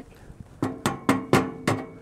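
Metal air vent on a charcoal grill being slid to a slightly open setting: about five sharp metallic clicks and knocks, each with a short ring.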